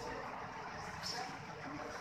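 Steady background hum of a busy hall with faint, indistinct voices.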